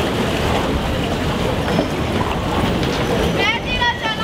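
Steady low rumble of a river cruise ship moving slowly through a lock, mixed with a crowd murmuring and wind on the microphone. A quick run of high chirps comes near the end.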